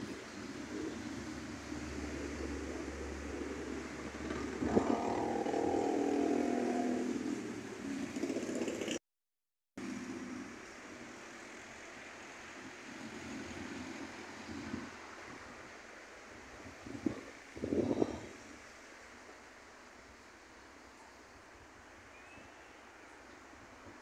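Roadside traffic sounds: a vehicle engine swells and fades in the first part, the sound cuts out for under a second, and then there is a quieter steady street background with two short louder passes near the end.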